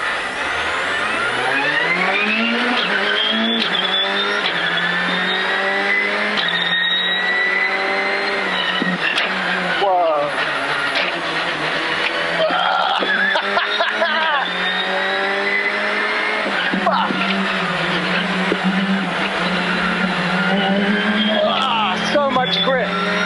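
Citroën R5 rally car's turbocharged four-cylinder heard from inside the cabin, pulling away hard and accelerating through the gears: the engine note climbs, drops back at each upshift, and climbs again, again and again.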